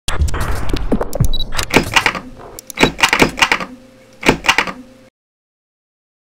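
Animated logo intro sound effects: a quick run of sharp hits, clicks and swishes that come in clusters, cutting off suddenly about five seconds in.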